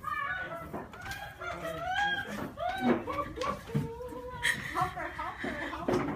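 Several people letting out high-pitched shrieks and squeals of excitement, in many short rising-and-falling cries that start suddenly and overlap throughout.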